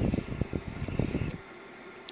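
Irregular low rumbling and buffeting on the microphone for about the first second and a half, then a quiet steady background.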